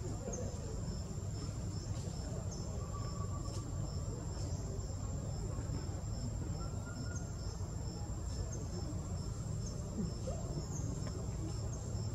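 Forest insects calling without pause: a steady high-pitched whine with a regular pulsing chirp just below it, over a steady low rumble.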